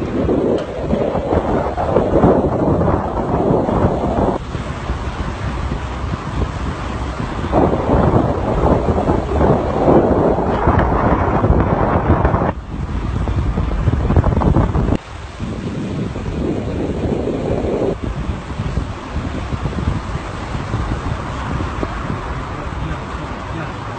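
Wind buffeting a phone microphone with road rumble from a moving vehicle, a rough rushing noise that jumps or drops abruptly several times where the clips are cut together.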